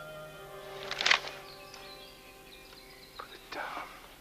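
Film score of sustained, held chords fading away. About a second in, a short, sharp hissing burst is the loudest sound, and a brief, softer noisy sound comes near the end.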